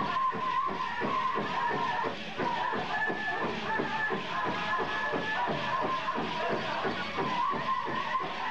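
Powwow drum group performing a grand entry song: high-pitched voices singing over a steady, even drumbeat.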